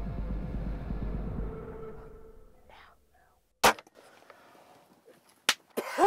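Background music fading out, then a crossbow being fired: one loud sharp snap about halfway through, followed by another sharp crack near the end.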